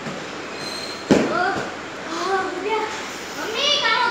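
Voices talking, with one sudden loud knock about a second in.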